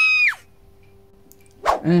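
A cartoon rat's high, held scream that breaks off with a quick downward slide about a third of a second in, followed by quiet with a faint steady hum until a single spoken word near the end.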